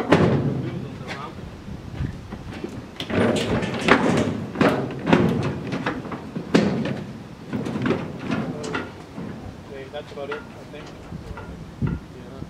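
Stripped Triumph GT6 body shell on a wheeled dolly being shifted along a ribbed metal trailer deck: a loud clunk at the start, then a run of knocks and rattles for several seconds, thinning out toward the end.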